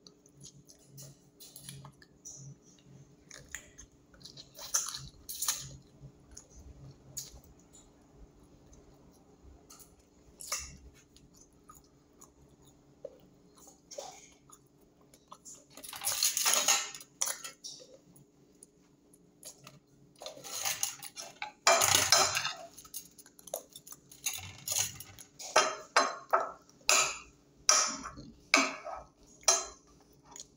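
Mouth sounds of someone eating fish by hand: chewing and lip-smacking, with occasional clinks on a glass plate. Louder bursts come about halfway through, and a quick run of sharp smacks and clicks comes near the end. A faint steady hum sits underneath.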